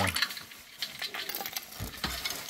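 Metal ladle stirring ice cubes and fruit slices in a bowl of fizzy drink, the ice clinking and ticking irregularly against the ladle and bowl, with a low knock near the end.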